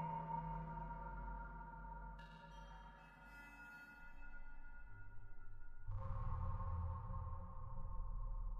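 Ambient electronic music from a Mutable Instruments modular synthesizer: slow, sustained ringing bell-like tones. The sound thins and dips about three seconds in, then a deep low drone comes in about six seconds in.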